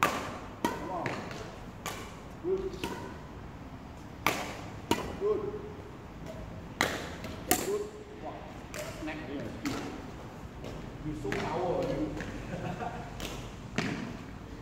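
Sharp cracks of a badminton racket striking shuttlecocks, irregular, some in quick pairs about half a second apart, ringing briefly in a large hall. Short vocal sounds come between the strikes.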